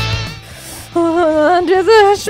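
Rock guitar music fades out within the first half second; then, from about a second in, a woman moans and whimpers in pain in long drawn-out, rising sounds.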